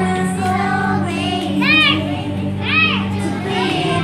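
Group of young children singing along to a recorded backing track with a steady beat.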